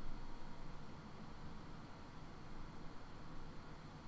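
Faint, steady background hiss with a low hum: room tone picked up by the microphone.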